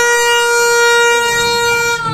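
A toy New Year's party horn blown in one long, loud, steady note that cuts off near the end.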